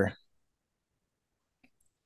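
A man's sentence breaks off, then two faint computer-mouse clicks come near the end, a moment apart.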